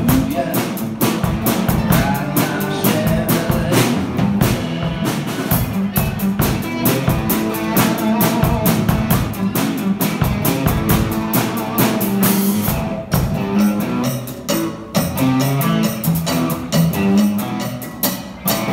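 Live rock band playing loud and steady: two electric guitars through amplifiers over a drum kit.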